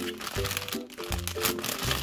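Foil toy packet crinkling and rustling as hands pull it open, over background music with a steady, repeating beat.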